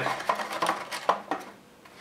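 A few light clicks and knocks from the plastic case of a Synology DS218play NAS as its front shell is snapped on and the unit is handled. The sounds fade out in the second half.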